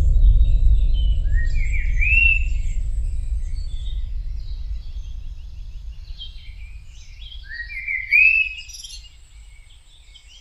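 Forest birdsong. One bird repeats a rising-then-falling whistled phrase about two seconds in and again about eight seconds in, over a deep low rumble that is loudest at the start and slowly fades away.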